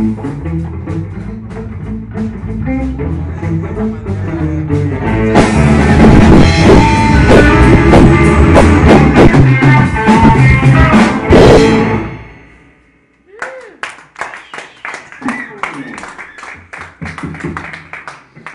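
Live blues rock band with electric guitar, Gibson Grabber bass and drum kit. It swells into a loud closing crescendo about five seconds in and ends the song abruptly about twelve seconds in. Then come scattered claps and voices.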